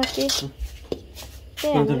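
Metal spatula scraping and knocking against a metal wok while stir-frying, with a few short clinks.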